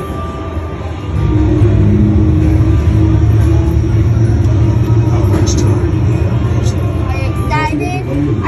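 Arcade shooting game's music and sound effects from the cabinet speakers, a loud low rumble coming in about a second in and holding steady, with a voice breaking in near the end.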